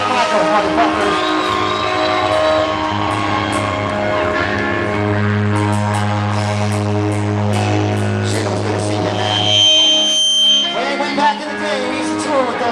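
Live hard rock band playing loud on electric guitars and drums in a large room, holding a long low note for several seconds. Near the end the low end cuts out for a moment while a steady high-pitched tone rings, then the band comes back in.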